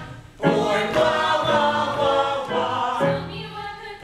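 Mixed ensemble of male and female voices singing a musical-theatre number together in harmony. The voices drop away briefly at the start and come back in strongly about half a second in.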